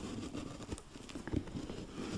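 Laces of a leather work boot being untied and tugged loose through its hex-shaped eyelets: soft rustling with a few light taps and ticks from fingers handling the boot.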